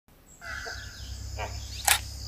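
Intro sound effect: a steady high tone over a low hum, with a brief sharp whoosh just before the end.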